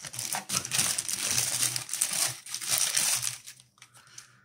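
Thin plastic wrapper crinkling as hands peel it off a pair of sunglasses, dying away shortly before the end.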